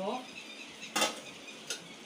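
Kitchenware clinking at a cooking pot: one sharp clink about a second in and a lighter one near the end.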